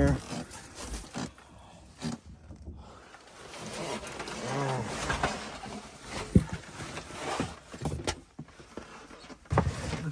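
Wet cardboard boxes and their contents being shifted and handled, with irregular rustling and scraping and two sharp knocks in the second half.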